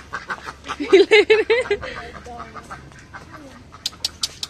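Domestic ducks quacking: a quick run of about six loud quacks about a second in, then quieter calls.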